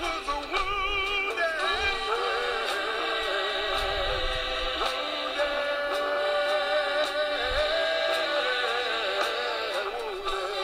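Recorded gospel song played from a computer: singers with strong vibrato over the accompaniment, one long note held through the middle. The sound is thin, with little bass.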